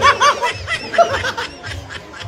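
Quick bursts of snickering laughter, strongest in the first second and dying away, over background music with a steady beat.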